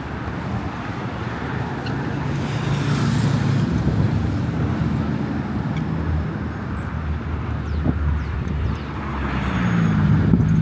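City street traffic: cars passing close by at an intersection, a low engine rumble with tyre noise that swells about three seconds in and again near the end.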